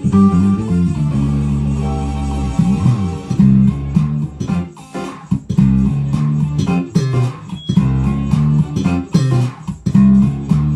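Electric bass guitar playing a low, moving bass line as part of band music, with sharp hits scattered through it.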